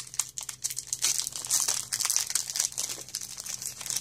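Foil booster-pack wrapper crinkling and tearing as it is pulled open by hand, a dense irregular run of crackles.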